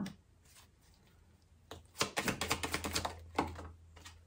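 Tarot cards being shuffled in the hands: a quick, rattling run of card clicks starting about two seconds in and lasting a second or so, after a very quiet start.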